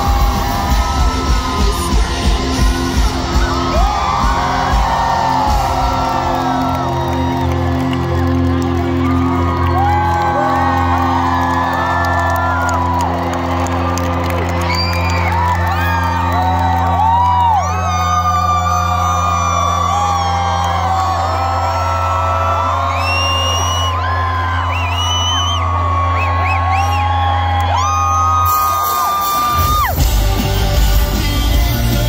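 Garage rock band playing live: after a few drumbeats the band holds one sustained, droning chord while the crowd whoops and shouts over it. The held chord stops near the end and the band starts playing in rhythm again.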